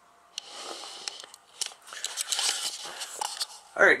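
Rustling and crinkling with scattered sharp clicks, starting about half a second in and running until a man's voice comes in near the end.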